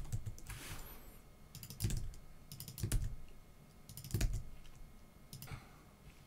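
Computer keyboard typing: short runs of keystrokes with pauses of about a second between them.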